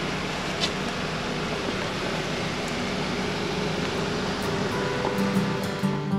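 Steady outdoor background noise, an even rushing hiss with no clear source. Acoustic guitar music fades in during the last second or so.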